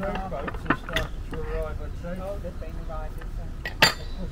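Metallic clinks from a canal lock's cast-iron paddle gear being worked with a windlass, with one loud sharp clank near the end, over voices talking and a low rumble.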